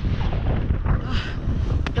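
Wind buffeting an action camera's microphone on a ski slope, a loud uneven low rumble, with a short hiss about a second in and a sharp click near the end.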